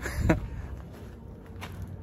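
A man's voice trails off briefly, then only low outdoor background noise remains.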